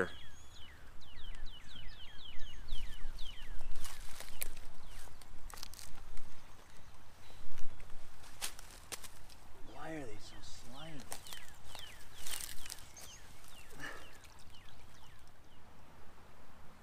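A bird gives a rapid series of short falling chirps for the first few seconds and again briefly about twelve seconds in. Scattered clicks and rustles come from handling at the stream's edge as a trout is released, and a short low vocal sound comes about ten seconds in.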